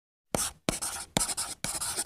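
Writing sound effect: a pen scratching across paper in four quick strokes, each starting sharply, matching handwritten script being drawn.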